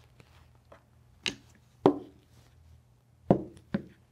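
Wooden chess pieces being picked up and set down on a chessboard: four clear knocks in two close pairs about two seconds apart, with a few fainter ticks between.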